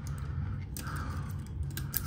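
Plastic wiring harness of a Honeywell T6 Pro thermostat being handled as wires are fed through it: a few light plastic clicks, over a low steady hum.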